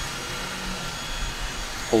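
Steady background noise: an even hiss with a faint low hum underneath and no distinct event.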